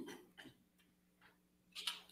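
Faint short clicks and rustles over a low steady hum: a burst at the start, a small click about half a second in, and another burst near the end.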